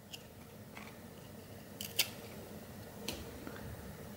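Cardboard trading cards being flicked through by hand, each card slid off the front of a sticky stack with a faint paper snap. There are a handful of these light clicks, the loudest about two seconds in.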